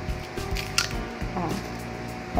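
Soft background music with faint murmuring, and a sharp plastic click about a second in as the small spray bottle of hand sanitizer is opened.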